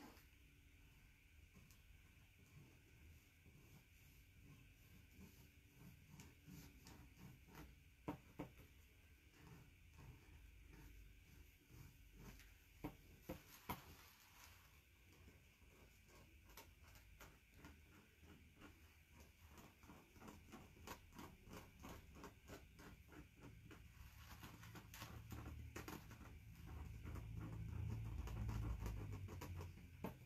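Faint scratching and tapping of a new paint pen's tip against the canvas, in short irregular strokes that come thicker in the second half; the new pen is finicky and slow to give its paint.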